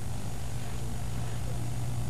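A steady low hum with a faint hiss, even throughout, with no other event.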